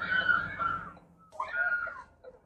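Two drawn-out, high-pitched whining cries: the first lasts about a second, and the second comes near the end after a short pause.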